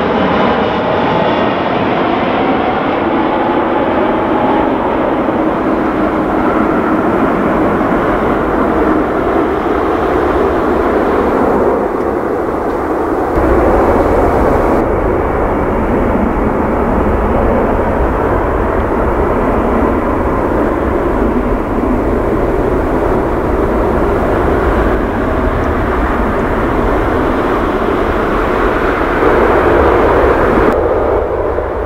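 Airbus A330-223F freighter's jet engines passing close on approach, their whine falling in pitch as it goes by. About halfway through, this gives way to a Boeing 787-9's engines at high power on the runway, a steady heavy rumble.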